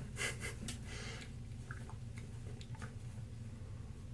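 A person's faint breathing, a few quick breaths in the first second, then only small quiet handling clicks.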